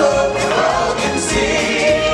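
A choir of voices singing over the show's musical accompaniment.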